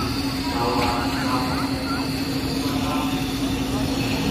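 Voices over a steady low hum and a rumbling background noise, the hum holding one pitch throughout.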